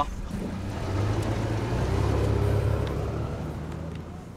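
Car engine and road noise as the SUV drives off, a low steady hum that grows louder about a second in.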